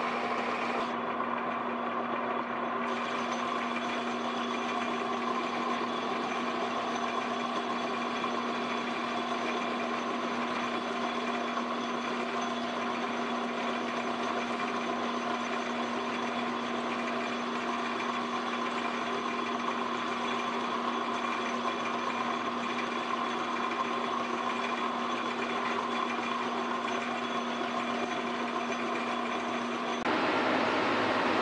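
Metal lathe running steadily with a constant hum, the chuck turning the shaft while the tool is fed by the compound slide to cut a 60-degree point on its end.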